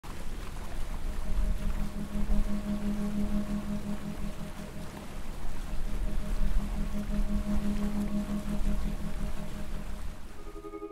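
Fishing boat's engine running at a steady low drone, with water rushing in its wake.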